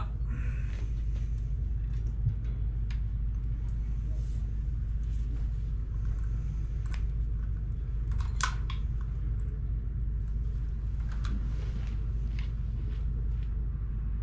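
A steady low rumble, with a few faint clicks and taps scattered through, the clearest about eight seconds in.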